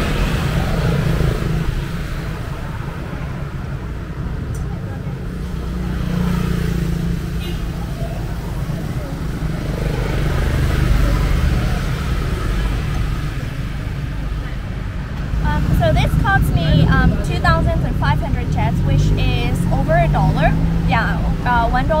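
Roadside street ambience: a steady low rumble of traffic with passing cars and motorbikes, and voices talking in the last third.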